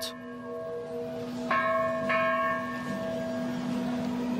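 A large bronze church bell rung by hand, its long ringing hum carrying on, struck again twice, about a second and a half and two seconds in.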